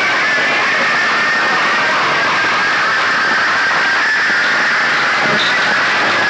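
Very loud output from a wall of horn loudspeakers on a DJ sound system, overloading the recording into a dense, steady, distorted noise with no clear beat or tune.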